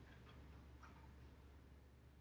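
Near silence: room tone with a steady low hum and a few faint clicks, the clearest just under a second in.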